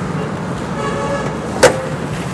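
Toyota Yaris bonnet being opened: a single sharp metallic click about one and a half seconds in as the hood's safety catch releases and the bonnet is lifted, over a steady low hum.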